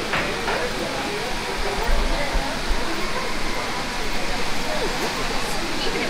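Crowd murmur: many people talking at once as they walk. It is a steady, dense wash of overlapping voices with no single speaker standing out.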